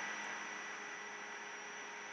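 Steady background hiss of a recording setup, with a faint electrical hum and a thin high-pitched whine running through it.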